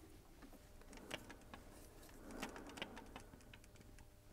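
Near silence with a few faint, scattered clicks and ticks of metal parts being handled at a lathe chuck.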